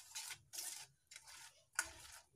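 A steel spoon scraping and stirring powdered sugar into melted ghee on a steel plate: faint strokes about twice a second, with a sharper click near the end.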